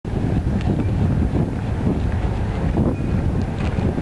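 Wind buffeting the microphone: a loud, gusty low rumble that rises and falls throughout, with a few faint clicks.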